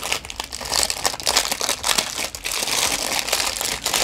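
Iridescent plastic pouch crinkling and crackling as hands unwrap and handle it, a continuous run of rustling with many small snaps.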